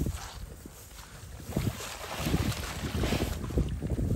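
Wind buffeting the microphone: a gusty low rumble that dips about a second in and builds up again.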